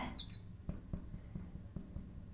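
Marker tip tapping dots onto a glass lightboard: a series of light, short taps, roughly three a second, as a dotted line of points is drawn.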